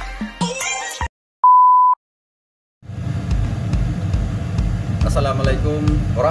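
Background music cuts off about a second in, followed by a single loud, pure, steady beep lasting about half a second, set between two gaps of dead silence. After the second gap a steady low kitchen hum starts, with a voice coming in near the end.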